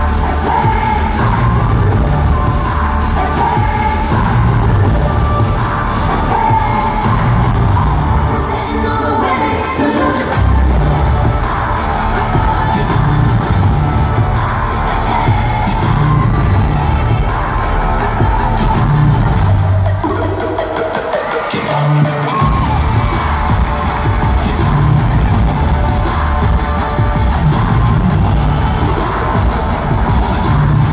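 Live pop music played loud through an arena sound system, with a heavy bass beat. The bass cuts out for a moment about twenty seconds in, then comes back.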